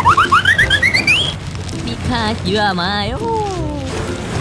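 Edited-in comedy sound effects: a quick run of short whistle-like chirps, each sweeping up and climbing higher in pitch. About two seconds in comes a wavering, warbling voice-like tone that slides down.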